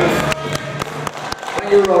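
Rock posing music cuts off about a third of a second in, followed by a few scattered hand claps from the audience and a short shout from a voice near the end.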